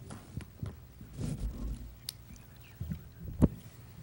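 Room noise with scattered soft clicks and knocks, a dull low thud a little over a second in, and one sharp knock about three and a half seconds in, the loudest sound.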